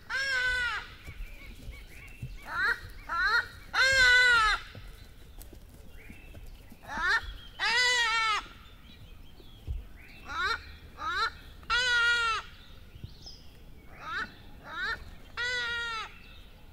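Repeated pitched animal calls in a regular cycle: one or two short calls, then one longer call that rises and falls, recurring about every four seconds.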